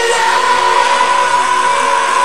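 Rock song with the drums removed: a loud, sustained guitar and synth chord with one high note held steady, no drum beat underneath.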